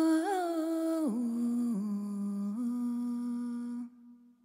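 A single voice humming a slow, wordless melody in long held notes. One higher note gives way to lower notes about a second in, and the humming stops just before the end.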